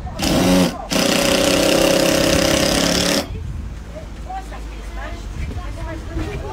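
Cordless power driver driving a screw into a timber batten: a short burst, a brief pause, then about two seconds of steady running that stops sharply.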